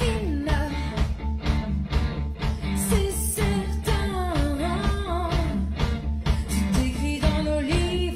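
Pop-rock band playing: a sung melody line over bass guitar, electric guitar and a drum kit keeping a steady beat.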